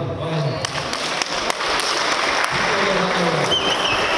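Audience applauding a boxing bout's winner, the clapping swelling about half a second in and running on steadily, with a voice heard briefly over it around the middle.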